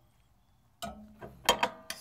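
A 22 mm open-ended wrench clinking twice in quick succession against a reducer fitting being threaded into a water heater tank, a quarter turn at a time, after near silence.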